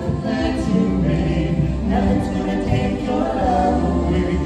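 Vocal trio of two women and a man singing a gospel song in harmony into handheld microphones, holding sustained notes.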